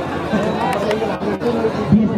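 A man's voice talking over the chatter of a crowd, with two brief sharp clicks about a second in.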